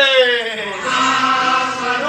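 Voices chanting in a sung, held line: a note slides down in pitch at the start, then steady held notes follow.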